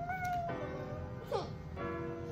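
A toddler's whiny crying over background music: a high wail about half a second long at the start, then a shorter rising whimper near the middle.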